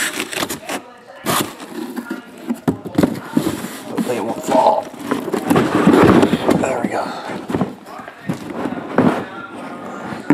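Shrink-wrapped cardboard hobby boxes being handled: irregular knocks, scrapes and rustles as they are pulled from the cardboard case and set down in a stack.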